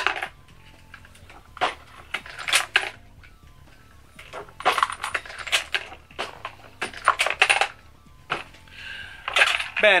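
Empty brass pistol cases being flared (case mouths belled) one at a time on a single-stage reloading press: clusters of metallic clicks and clinks from the press stroke and the brass cases dropping into a plastic bin, about every two seconds.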